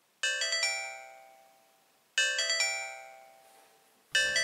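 Incoming-call ringtone on a PinePhone running Sxmo, played twice about two seconds apart: each time a quick run of bell-like notes in the first half-second that then rings out and fades.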